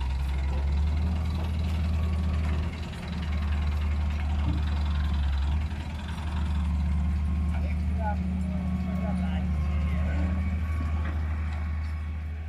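Massey Ferguson 385 tractor's diesel engine running steadily at low revs, a deep drone that dips briefly twice.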